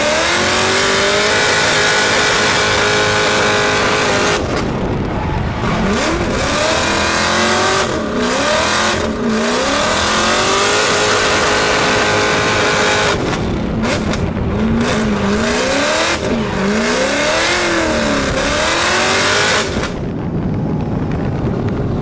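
Swapped LSX V8 of a drifting Nissan Silvette, heard up close and revving hard. The revs rise and fall again and again with brief lifts off the throttle, then drop back near the end.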